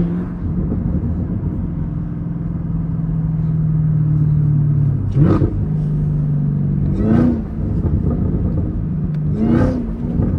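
Chevrolet Camaro ZL1 1LE's supercharged V8 heard from inside the cabin, cruising with a steady low drone. Three times, about five, seven and nine and a half seconds in, the engine note breaks into a brief surge that swings up in pitch and back.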